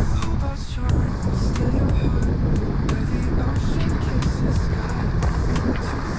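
Wind buffeting the microphone, a steady loud low rumble.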